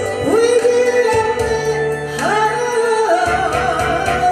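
A woman singing a Korean trot song into a microphone over a backing track, holding two long notes that each slide up into pitch at the start.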